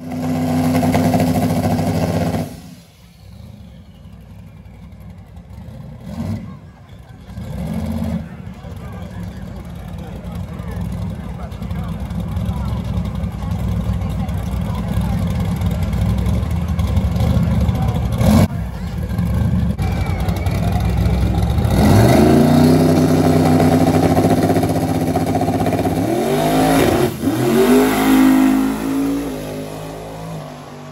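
Drag-race car engine held at high revs during a smoky burnout, cutting off after a couple of seconds, then a few short revs. Later the cars launch and the engine pitch climbs, drops at a gear change and climbs again, with crowd voices throughout.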